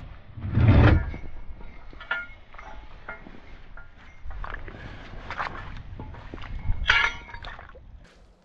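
Fishing gear being handled in a small dinghy: a heavy thump about half a second in, then scattered knocks and short ringing clinks, the sharpest near the end.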